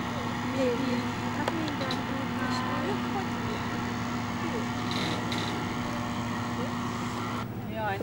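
A boat engine running at a steady pitch across the water, with faint voices over it. It cuts off abruptly near the end.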